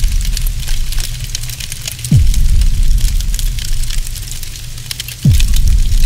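Cinematic outro sound effects: two deep booming hits about three seconds apart, each with a quick falling pitch sweep into a low rumble, over steady crackling like fire and scattering debris.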